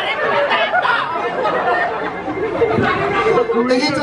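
Speech: several voices talking and chattering over one another.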